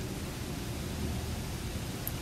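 Steady, even hiss of the recording's background noise, with no other sound standing out.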